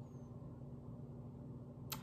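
Quiet room tone with a steady low hum, and one short sharp click near the end.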